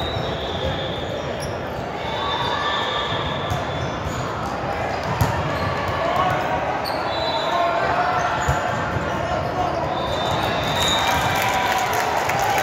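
Indoor volleyball game sounds on a hardwood court: sneakers squeaking, a few sharp thuds of the ball being struck, and players' and spectators' voices, all echoing in a large hall.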